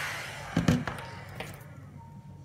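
Electric heat gun switched off, its fan winding down with a falling whine and fading out over about a second and a half. A couple of sharp knocks come about half a second in, with one more a little later, as tools are handled on the bench.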